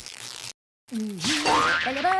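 Cartoon sound effects: a brief hiss, a short silence, then a springy, boing-like tone that dips and then rises in pitch.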